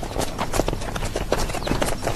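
Hooves of several horses walking on a dirt road, an irregular, overlapping clip-clop.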